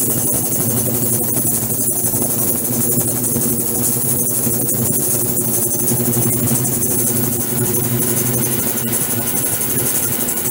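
Ultrasonic cleaning tank running: a steady buzzing hum under a constant high hiss from cavitation in the water.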